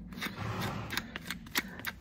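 A hoof knife paring and scraping the horn of a horse's hoof sole in a quick series of short cutting strokes, about four a second.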